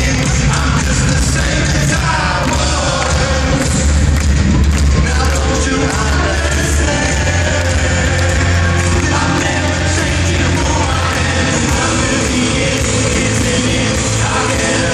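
Live rock band playing loudly in an arena hall, with singing over a heavy, steady bass.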